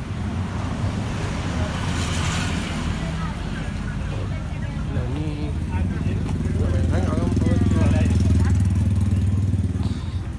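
A motor vehicle engine running close by, a steady low hum that grows louder about two-thirds of the way through.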